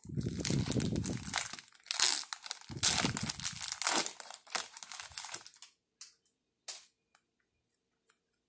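Foil wrapper of an Upper Deck Goodwin Champions trading-card pack being torn open and crinkled by hand: a dense crackling that stops about five and a half seconds in, followed by a few faint ticks.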